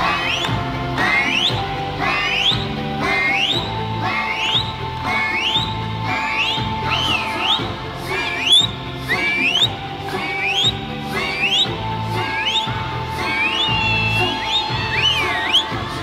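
Eisa drum music: Okinawan barrel drums and hand drums beaten in a steady rhythm under an accompanying tune, with a shrill whistle that sweeps sharply upward about once a second.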